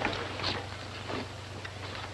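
Steady low hum and hiss of an old film soundtrack, with a few faint scuffs as the men move off with their packs and tools.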